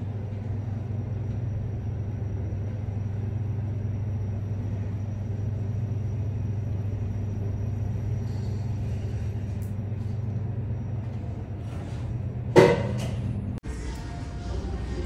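A steady low hum, even in level throughout, with a brief louder sound about twelve and a half seconds in.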